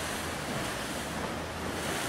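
Small ocean waves breaking and washing against jetty boulders, a steady rushing surf with wind on the microphone.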